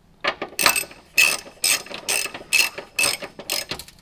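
Hand ratchet clicking in short bursts, about two to three a second, as bolts are run up into threaded holes in a car's chassis.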